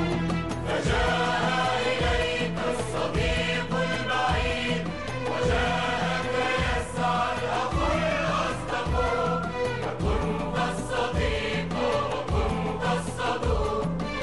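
Arabic nasheed: a choir of voices singing a melody over music with a steady low drum beat.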